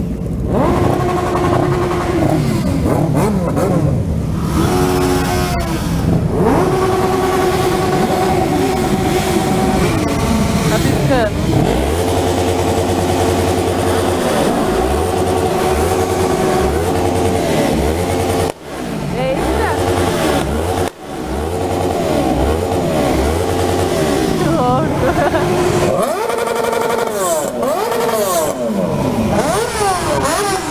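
A large group of motorcycles idling and revving as they pull away together, many engines rising and falling in pitch over one another, with voices mixed in. A low pulsing runs for several seconds in the middle, and the sound drops out briefly twice.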